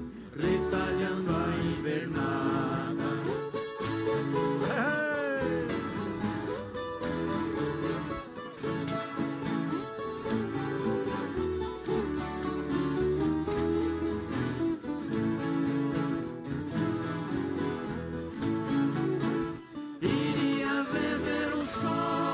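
An orchestra of violas caipiras, Brazilian ten-string folk guitars, playing together: many plucked strings in a passage between sung verses of a caipira song.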